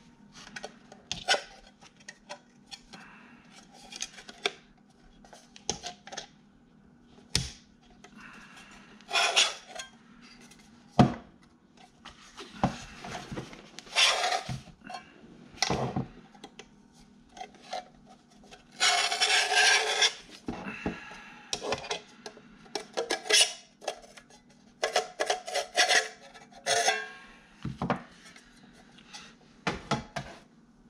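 Aluminium external hard-drive enclosure being taken apart by hand: irregular scrapes, clicks and knocks of metal parts as the drive tray is pushed out of the case, with one longer scraping slide about nineteen seconds in.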